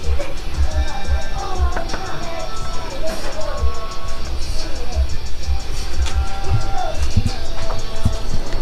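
Background music with drums and a melody line.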